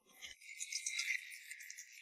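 Dice rattling as they are shaken in a cup: a thin, high rattle that starts a moment in and lasts about a second and a half.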